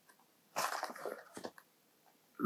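Stiff cardboard rustling and scraping as a folded paperboard insert is handled and opened, lasting about a second from half a second in.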